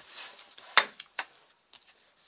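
A coil-bound paper planner being turned around by hand on a wooden table: a soft sliding, rustling noise, then one sharp click a little before the middle and a couple of lighter taps as it is set down and flattened.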